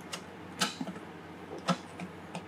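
A few light clicks and taps, four or so and irregular, the loudest near the end, as fingers position a thin plastic degree wheel against an engine crankcase.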